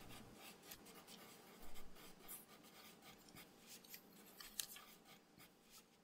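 Near silence: faint room tone with a few soft scattered clicks and rustles.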